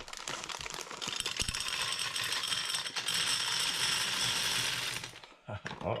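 Almond M&M's pouring from a plastic bag into the glass globe of a gumball-style candy dispenser: a dense, steady clatter of small hard candies hitting glass and each other. The pour stops about a second before the end as the bag runs empty.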